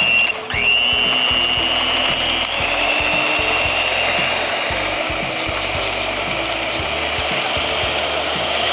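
Electric stand mixer running its whisk through cold cream in a stainless steel bowl, whipping it toward chantilly. The motor winds up within the first second, then runs with a steady high whine.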